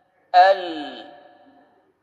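A recorded voice pronouncing the Arabic syllable "al" (lam with sukun after a fatha) once, about a third of a second in, as a tajweed demonstration of how lam is articulated. It starts loud and fades out over about a second, with the pitch falling.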